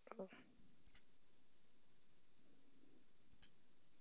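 Near silence with two faint computer mouse clicks, one about a second in and one near the end.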